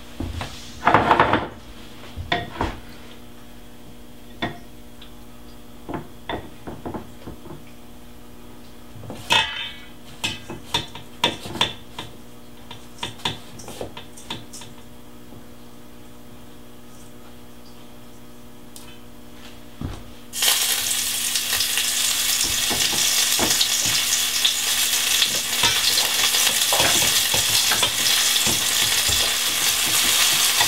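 Scattered taps and clinks of a bowl and utensils over a steady hum as herring are dredged in ground oats. About twenty seconds in, loud sizzling starts suddenly and holds steady as the oat-coated herring go into hot coconut oil in a frying pan.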